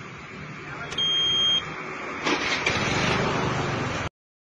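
Outdoor roadside street noise, with a short, loud high-pitched electronic beep about a second in, then a louder, steady rush of noise from a little after two seconds.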